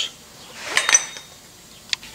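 A light clink of glass and metal about a second in, as a sand hourglass in its metal stand is set down, then a single sharp click near the end.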